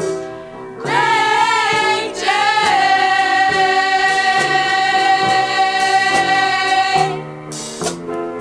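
A women's vocal group singing with instrumental backing, from a 1970s vinyl album. The voices come in about a second in, settle on one long held note, and drop out shortly before the end, leaving the backing.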